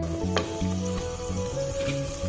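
A frozen block of tomato sauce sizzling in hot oil in a steel pan, with background music with a steady beat playing over it.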